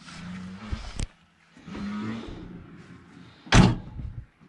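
Rear cargo door of a van being shut: handling and scraping sounds, a sharp knock about a second in, and a loud slam near the end.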